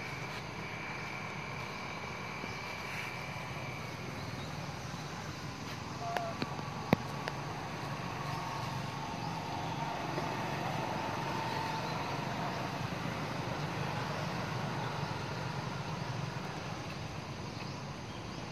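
Steady outdoor background noise with faint, thin high calls in the background. A single sharp click about seven seconds in is the loudest sound.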